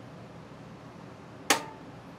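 A single sharp click of an RV gas cooktop's spark igniter about one and a half seconds in, lighting a burner on gas still purging from the line.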